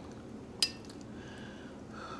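A metal spoon clinks once against a glass plate while scooping green beans, a single sharp clink with a brief ring about half a second in.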